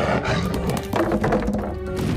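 Film soundtrack: a bear growling over the orchestral score.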